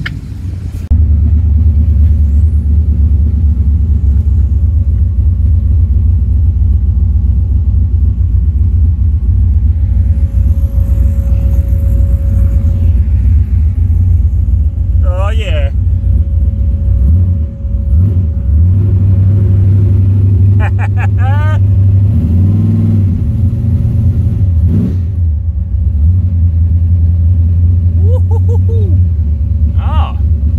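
Heard from inside the cabin, the LS1 V8 of a Holden VH Commodore burnout car on a methanol carburettor, running with a loud, deep, steady rumble while driving on the street, revving up briefly about two-thirds of the way through.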